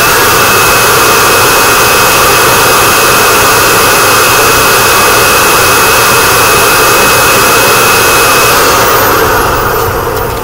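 2004 Dirt Devil Vision Wide Glide upright vacuum running loud and steady, with a high motor whine over the rush of airflow. Near the end it is switched off and the whine falls as the motor spins down.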